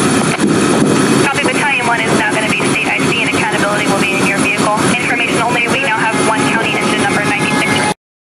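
Loud, steady roar of a fully involved building fire blended with running fire-ground engines. People's voices talk over it from about a second in.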